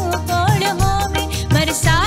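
A woman singing a Punjabi song into a microphone, her voice sliding and ornamenting a long line, over live band accompaniment with steady bass and a drum beat about twice a second in a dandiya rhythm.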